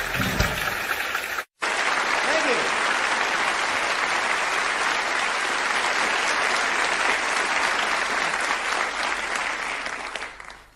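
Audience applause after a song ends: a short stretch of clapping, a sudden moment of silence about one and a half seconds in, then steady applause that fades out near the end.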